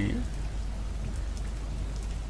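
Steady recording noise: an even hiss over a low electrical hum, with the tail of a spoken word trailing off at the very start.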